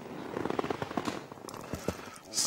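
A man laughing heartily in a rapid, uneven string of short bursts.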